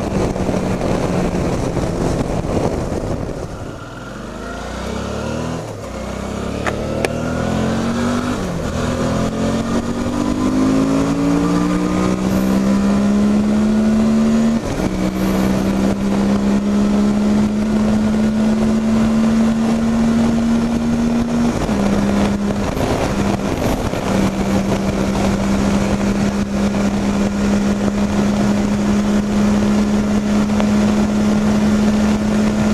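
Motorcycle engine under hard acceleration on a top-speed run, with wind rushing past. The engine note sags a few seconds in, then climbs for about eight seconds. It drops at an upshift, climbs slowly again, drops once more at a second change, and settles into a steady high-speed drone.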